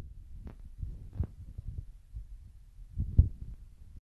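Handling noise from a handheld phone's microphone: a string of low, irregular thumps and faint rustling, the loudest about three seconds in.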